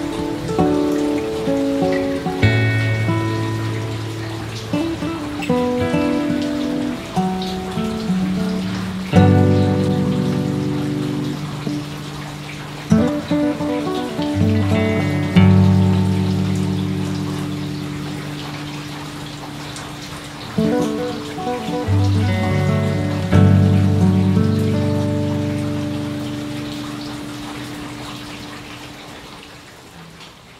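Slow, calm acoustic guitar music, single notes and chords plucked every few seconds and left to ring, over a steady patter of rain. The music fades away near the end.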